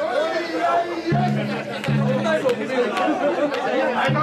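Crowd of mikoshi bearers chanting in rhythm as they carry a large portable shrine, many voices overlapping in sustained calls that start and stop about once a second, with a few sharp clacks in the second half.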